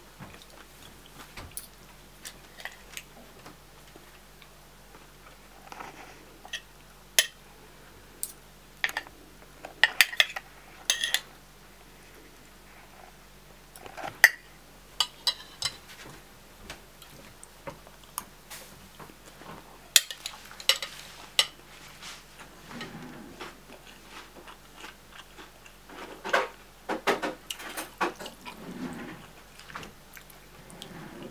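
Metal spoon and fork clinking and scraping against a bowl as rice, cabbage and hot dog are scooped up, in irregular clusters of sharp clicks, with chewing in between.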